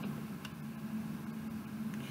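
Quiet room tone: a steady low hum with faint hiss and a couple of soft clicks.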